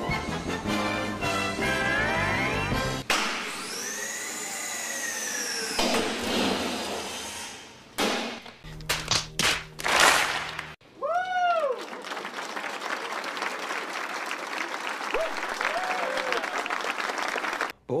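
A rapid montage of sound snippets: a few seconds of music, a long whistle-like glide that rises and falls, a short call that rises and falls at about eleven seconds, then an audience applauding for the last six seconds.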